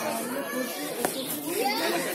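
Background voices of people talking at a distance, with a single sharp click about halfway through.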